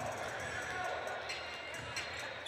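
Gymnasium game ambience: indistinct voices from people around the court and a basketball bouncing on the hardwood floor.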